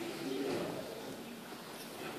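Low murmur of voices in an audience in a concert hall.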